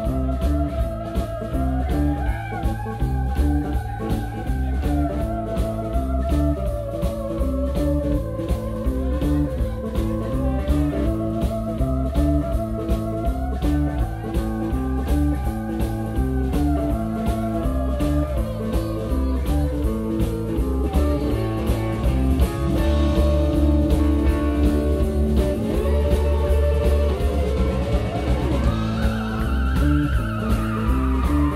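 A live blues-rock band playing, with a lead guitar holding long, bent, wavering notes over bass and a steady drum beat. A rising bend comes near the end.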